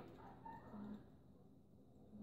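Near silence: room tone, with a faint brief murmur in the first second.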